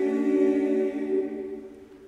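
An a cappella vocal group singing a jazz standard, holding a chord that fades away about a second and a half in, leaving a brief pause before the next phrase.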